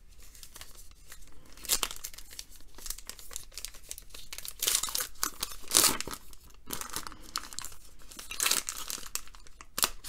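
Foil wrapper of a trading-card pack being torn open and crinkled, in several short irregular rips; the loudest come about five to six seconds in.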